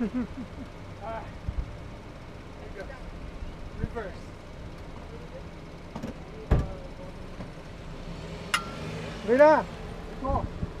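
The 1.8-litre non-turbo four-cylinder engine of a 2013 Chevrolet Cruze idling steadily, with short bursts of indistinct voices over it. A sharp knock comes about six and a half seconds in, and a louder voice or laugh near the end.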